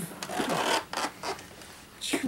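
People making mouth sound effects, a noisy hissing burst of about half a second followed by a few shorter hisses and falling vocal glides.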